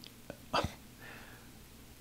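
A brief mouth noise from a man pausing mid-sentence: a small click, then a short sharp breath or gulp about half a second in, and a faint breath after it.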